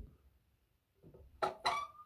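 Two metallic clinks about a second and a half in, followed by a short ringing tone, as the steel lid is set onto a small electric melting furnace.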